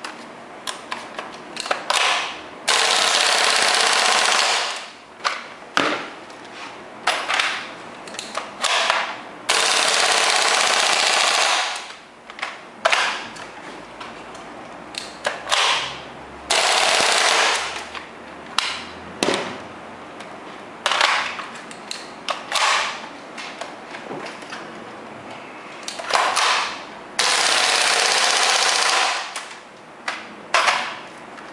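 WE G39C gas blowback airsoft rifle firing: single shots and short bursts, broken by four long full-auto bursts of about two to three seconds each.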